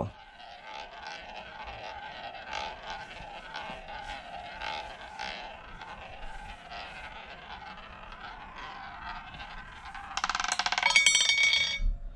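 Ball rolling around the track of a spinning wooden roulette wheel, a steady whirring roll. About ten seconds in it drops off the track and clatters over the frets into a pocket, a quick rattle of ticks that stops suddenly as it settles.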